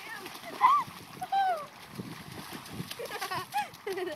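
Children splashing and wading through a shallow snowmelt puddle, water sloshing and spattering around their feet. Several short, high-pitched children's shouts and squeals come over the splashing.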